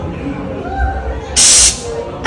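A recorded human sneeze played loudly through an interactive exhibit's speakers: one sudden, loud hissing burst about one and a half seconds in, lasting about a third of a second.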